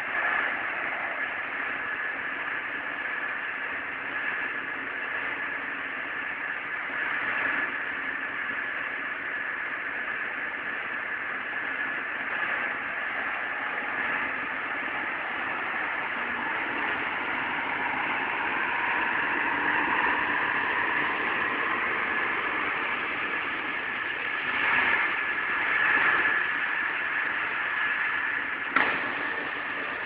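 Diesel engine of a Liugong wheel loader running as the machine drives and works its bucket, heard from some distance. It swells in loudness a few times, and there is one short sharp knock near the end.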